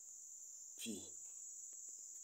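A faint, steady, high-pitched insect chorus, like crickets trilling, runs throughout. A man's voice briefly says "P" about a second in.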